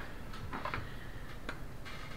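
A few light clicks and taps spread over two seconds as a marker is handled over a paper chart on a table.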